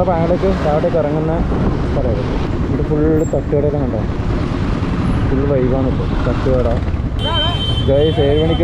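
A man talking over the steady low rumble of a motorcycle riding in traffic, with road and wind noise. A thin high steady tone comes in near the end.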